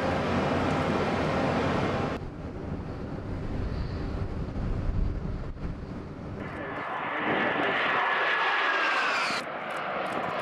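Military assault boats running fast through rough water, with engine noise and a rush of spray. About two seconds in this drops to a lower engine rumble. Later a high engine whine comes in and falls slowly in pitch, as of a craft passing.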